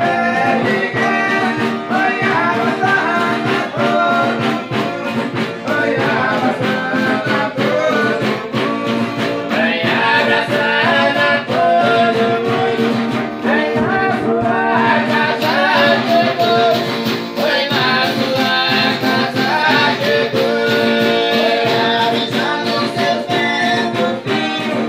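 Folia devotional folk music: a group of men singing a chant together, with a strummed guitar keeping a steady beat.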